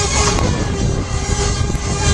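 Technical Park 'Take Off' fairground thrill ride in motion, heard from a rider's seat: a loud, steady rushing rumble, with the ride's music still playing underneath.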